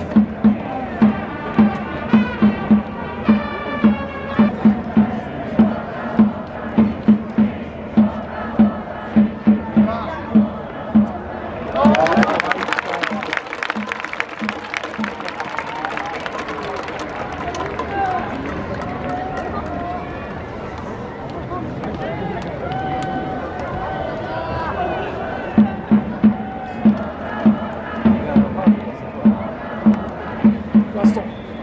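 Baseball stadium cheering section: a drum beating steadily, a couple of strokes a second, under a chanted and played cheer melody. About twelve seconds in the drum stops as the crowd bursts into loud cheering and clapping, which settles into crowd noise before the drum and cheer song start up again near the end.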